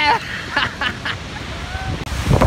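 A man's short, quack-like vocal noises, a few quick ones about half a second to a second in, then a faint pitched voice near the end.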